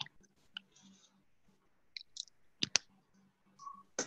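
A handful of sharp, scattered clicks and taps, the loudest two in quick succession a little before three seconds in, over a faint steady low hum.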